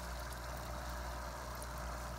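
Steady hum of an aquarium air pump, with an air stone bubbling in a bucket of water.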